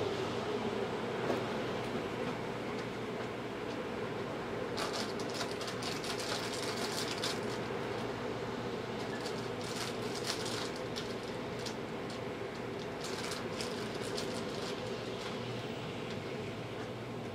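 Steady low room hum, with light rustling of hands handling cards and supplies on a table, coming and going a few times.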